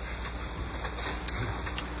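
Steady hiss of an old recording in a pause between speakers, with a few faint clicks.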